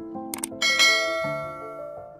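Two quick mouse-click sounds followed by a bright bell chime that rings out and fades over about a second, the stock sound effect of a subscribe button's notification bell being clicked. Soft piano background music plays underneath.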